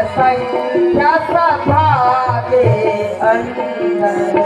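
Singing with tabla accompaniment: one voice holds wavering, ornamented notes over a regular tabla rhythm with deep bass-drum strokes.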